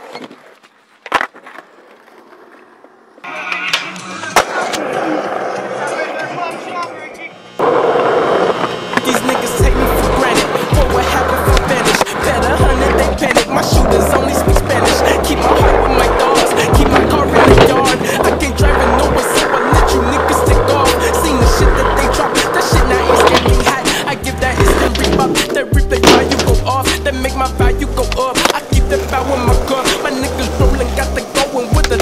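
Skateboard wheels and board clacks on concrete, sparse at first. About eight seconds in, music comes in and dominates, with a heavy repeating bass beat from about ten seconds, while skateboard pops and clacks keep showing through.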